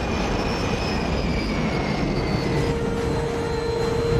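Jet airliner noise from a film's sound effects: a steady low rumble with a high whine slowly falling in pitch as the pilotless plane dives, and a steady tone joining a little past halfway.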